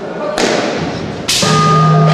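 Two sharp thuds, about a second apart, of a wushu athlete's feet landing on a carpeted floor during a broadsword routine; the second and louder one is followed by a steady, held low tone.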